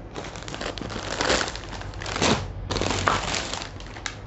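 Clear plastic wrapping crinkling and rustling as a folded saree is pulled out of its plastic cover, with a few louder crackles.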